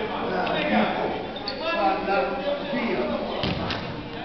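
Indistinct voices of players and spectators calling out in a gymnasium, with two sharp thuds about three and a half seconds in.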